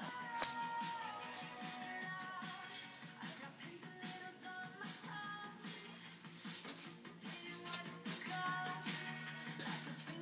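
Small toy maraca shaken by a baby in irregular bursts of rattling: one sharp shake near the start, another a second later, then a run of quicker shakes in the second half. Music plays underneath.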